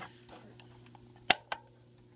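Two sharp clicks about a fifth of a second apart, the first louder: the power switch of a 1975 Texas Instruments TI-1250 calculator being switched on.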